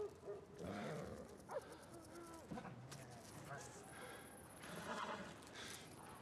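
A man's short pained grunt, then faint horse whinnies a few times in the first half.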